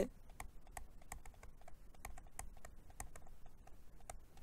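Faint, irregular clicking and tapping, several light clicks a second, from a stylus on a pen tablet while a word is handwritten.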